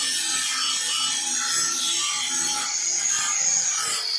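Handheld angle grinder with an abrasive disc grinding a metal workpiece clamped in a bench vise: a steady grinding rasp.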